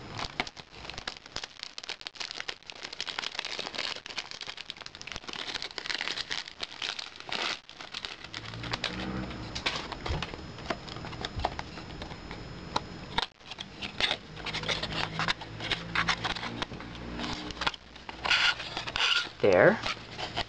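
Clear plastic cellophane wrap crinkling and crackling as it is peeled off a cardboard perfume box by hand, in irregular bursts of fine crackles.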